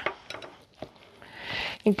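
Spatula stirring a thick, wet corn-and-flour batter in a glass mixing bowl: soft scraping with a few light taps against the glass.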